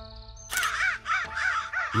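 A flock of crows cawing: a quick run of short, overlapping caws begins about half a second in, over background music with held notes.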